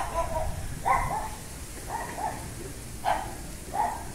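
A dog barking: a series of short barks, roughly one a second, with two close together in the middle.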